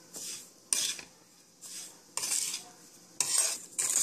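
Steel spoon scraping and stirring a dry, grainy mix of roasted semolina, coconut and sugar around a wide pan, in about five strokes.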